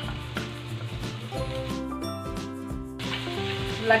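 Background music over a faint sizzle of julienned jicama, carrot and potato strips frying in oil in a frying pan. The sizzle fades out for about a second in the middle.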